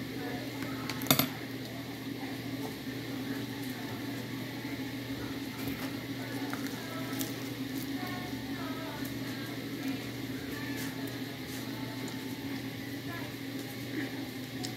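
Children's cartoon voices and songs playing faintly in the background over a steady low hum, with one sharp clink of a fork against the rice bowl about a second in.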